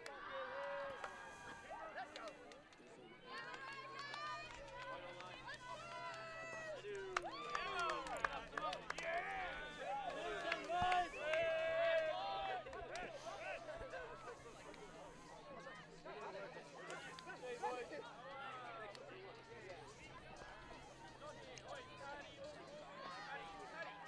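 Voices of players and people at the field talking and calling out at a distance, clearest near the middle, over a faint low steady hum.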